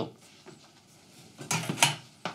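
Thin steel plate set down onto a laser engraver's metal honeycomb bed: a short metallic clatter in the second half, with the loudest clink near the end.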